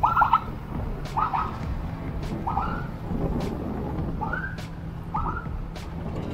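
Motor scooter engine running steadily while riding in traffic, picked up on a helmet mic. Over it comes a short, high chirp, repeated six times at uneven gaps of about one to two seconds.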